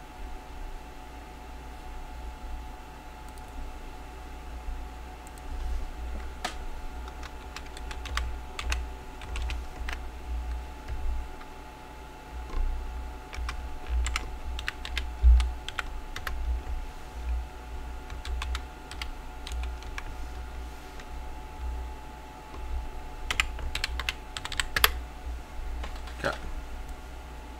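Typing on a computer keyboard in short, irregular runs of keystrokes with pauses between, over a steady faint hum.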